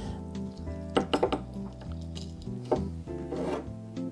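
Soft background music, with a few light clinks and handling sounds of a glass jigger as fresh lemon juice is measured into it and the jigger is lifted.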